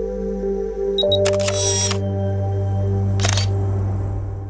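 A camera sound effect over held ambient music: two quick focus-confirmation beeps about a second in, then a shutter release, and a second shutter click near the end.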